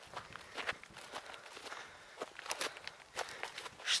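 Footsteps walking through dry grass, a quiet run of short, irregular steps.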